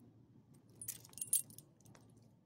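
Metal ID tag and leash snap on a dog's collar jingling as the dog moves, a short cluster of jangles in the middle of the moment.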